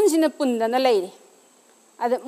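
A woman speaking in Manipuri for about a second, then a pause of near silence.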